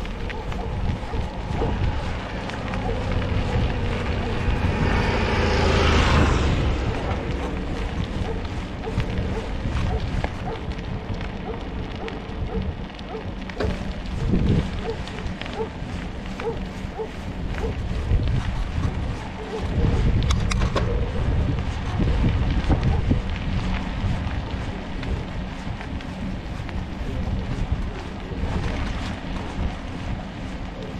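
Wind rushing over the microphone of a camera on a moving bicycle, with tyre and road noise underneath. The noise swells to its loudest about six seconds in.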